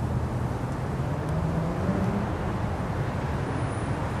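Las Vegas Monorail train approaching along its elevated guideway: a steady low rumble with a faint hum that rises a little in pitch midway.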